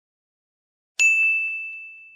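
Silence, then about a second in a single bright bell-like ding that rings on and fades slowly. It is an edited sound effect in the video's intro.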